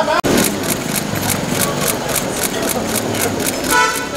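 Rapid camera shutter clicks from a bank of press photographers, several a second, over a murmur of voices, with a short horn-like tone near the end.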